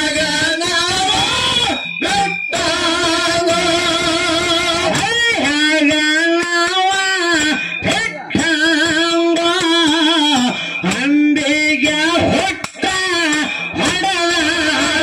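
Live dollina pada folk song: a high voice singing an ornamented melody with wavering pitch into a microphone over instrumental accompaniment, with short breaks between phrases.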